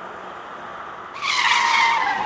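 A road vehicle's high squeal over steady street noise, starting about a second in and falling slightly in pitch as it goes.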